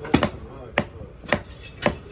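Large knife chopping through tuna onto a wooden chopping block: about five sharp strikes, the first two close together, then roughly two a second.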